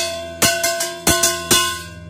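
Small hammer striking a recycled circular steel disc about four times, each sharp hit leaving a bright metallic ring that hangs on: a ring test to tell whether the disc's steel is good for making knives.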